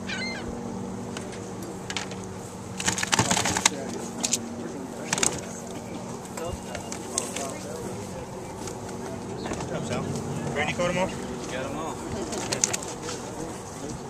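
Live bass being handled in a plastic weigh basket: a few short splashing, rattling bursts of water and fish, the longest about three seconds in and others near five and twelve seconds. Under them runs a steady low hum and faint background voices.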